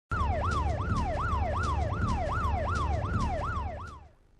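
Siren sound effect on a TV crime segment's title card: a fast yelp whose pitch sweeps up and down about three times a second over a deep rumble, fading out near the end.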